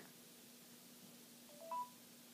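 Short electronic beep from an Android 4.0 tablet's small speaker about one and a half seconds in, three quick notes stepping upward: the voice-search tone marking the end of listening as the results come up. A faint steady hum lies under the otherwise near-silent room.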